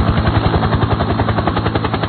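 Helicopter rotor sound effect: a loud, fast, steady chopping of rotor blades.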